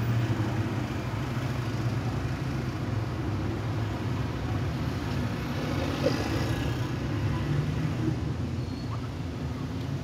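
Steady road traffic noise from slow-moving congested traffic: low engine sound of cars, trucks and motorcycles, with no single event standing out.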